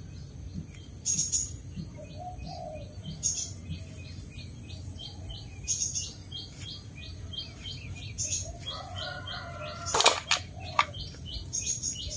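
Small birds chirping repeatedly, short falling chirps about twice a second, over a steady high-pitched tone. A couple of sharp knocks near the end are the loudest sounds.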